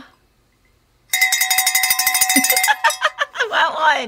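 A cowbell rung rapidly, many quick strikes in a row for about two seconds, starting about a second in. Laughing and talking come in over its last part.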